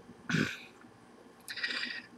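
Brief non-speech vocal sounds from a man at the microphone: a short throaty sound about a third of a second in, then a breath drawn in near the end, just before he speaks again.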